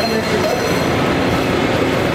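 Loud, steady hubbub of a busy airport terminal: rumbling hall noise with overlapping distant voices, without a clear single speaker.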